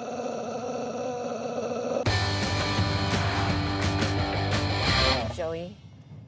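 Throat singing: a drone held steady on one pitch with overtones ringing above it. About two seconds in, loud music with a steady bass beat and guitar takes over, then stops near the end.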